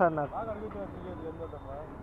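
Men's voices in conversation: one louder word at the start, then quieter talk, over a low steady rumble.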